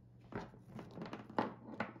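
Handling sounds: an electric iron's power cord being pulled and dragged across a woven mat, with a few light knocks. The loudest knock comes about a second and a half in.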